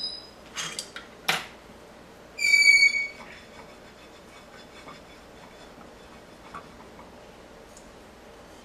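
A single short, steady, high-pitched whistle-like tone about two and a half seconds in, preceded by a few light clicks in the first second and a half.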